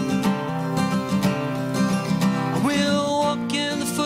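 Acoustic guitar playing a short instrumental passage of picked notes between sung lines, with one short upward slide in pitch about two and a half seconds in.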